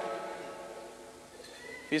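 A pause in a man's lecture: the echo of his voice fades into faint room hum, and he starts speaking again near the end.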